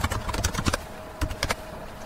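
Typing on a computer keyboard: a quick run of irregular keystrokes in small bursts as a short command is typed.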